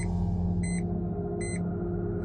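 Short electronic beeps, two about a second apart, over a low steady suspense-music drone, as the digital weigh-in scoreboard flicks through numbers before showing the weight.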